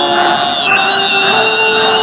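Background music: a melody of held notes that step from one pitch to the next.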